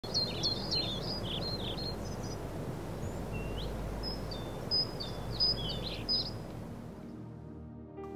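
Songbirds chirping in quick repeated phrases over steady outdoor background noise; the outdoor sound fades out about seven seconds in as soft music with sustained tones comes in.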